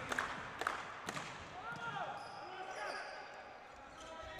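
Volleyball rally on an indoor court, fairly faint: three sharp ball thuds about half a second apart in the first second or so, then short squeaks of court shoes on the floor.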